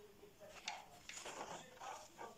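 Faint speech in the background, with a short sharp click about two-thirds of a second in and a rustling noise a little later as a glass jar of melted candle wax is handled in a paper towel.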